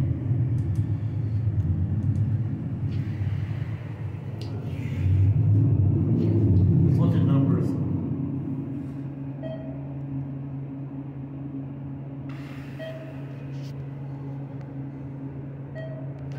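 ThyssenKrupp traction elevator car in motion: a steady low hum and rumble, louder for a few seconds partway through and then settling. Short faint beeps come about three seconds apart in the second half, as the car passes floors.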